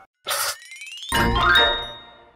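Logo-intro sound effect: a short burst, a quick rising whistle-like glide, then a bright ding with a low thump underneath. The ding rings out and fades.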